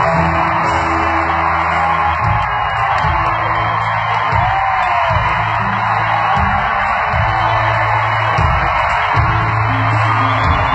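Live band music played loud over an arena sound system, heard from far up in the seats, with a crowd yelling and whooping along. Sustained bass notes change every second or two under a dense, unbroken wash of sound.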